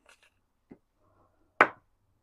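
Quiet handling of paper dollar bills as they are slid into a laminated envelope, a few soft rustles early on, then one sharp click a little past halfway.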